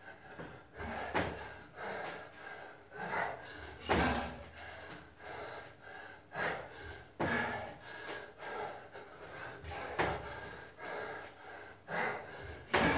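A man breathing hard and gasping while doing hanging knee raises on a pull-up bar, with a loud sharp breath every one to three seconds as the reps go on.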